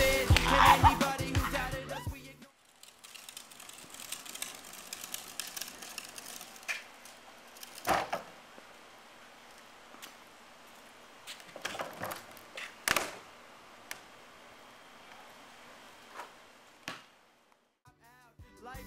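Hip-hop music with rapping for about the first two seconds, then cut off abruptly. After that comes a faint outdoor background with a few scattered sharp knocks and thuds, the loudest about eight seconds in, from a basketball bouncing on a concrete driveway and striking the hoop.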